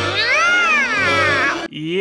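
A cartoon ghost character's high, wailing yell of "Oh my God!" over background music, the pitch swooping up and down; it cuts off abruptly near the end, where a man's voice begins.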